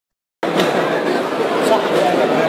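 Many students chattering at once in a lecture hall, a dense murmur of overlapping voices that cuts in abruptly about half a second in.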